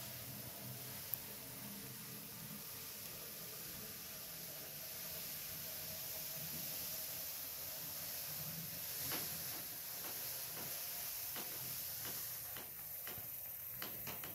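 Faint steady hiss of room tone with a low hum, and several light clicks in the last five seconds.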